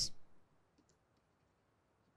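Faint, sparse clicks of a stylus tip tapping on a pen tablet during handwriting.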